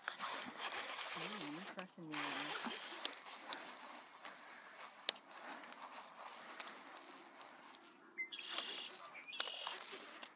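Rustling of tall grass and handling noise from the rod while a small bass hooked on a frog lure is brought in, with insects chirring steadily behind. A brief low mutter of a voice comes about a second in, and a single sharp click about halfway through.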